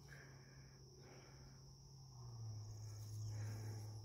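Faint outdoor ambience: a steady high-pitched drone of crickets over a low hum that grows louder a little past two seconds in.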